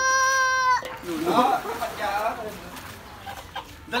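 A chicken being carried in a child's arms calling: one long, steady, high-pitched cry in the first second, then a run of shorter squawks that rise and fall.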